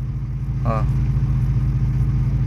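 A car engine idling steadily, a low even rumble heard from inside the car's cabin.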